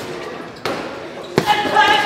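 Gloved punches landing on a heavy punching bag: two thuds under a second apart, the second and harder one followed by a short, steady ringing tone.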